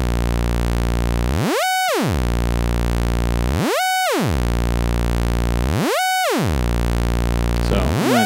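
Doepfer A-110 analog oscillator running a low drone whose pitch is swept by LFO modulation passed through an A-131 exponential VCA. The pitch swoops up high and straight back down about once every two seconds.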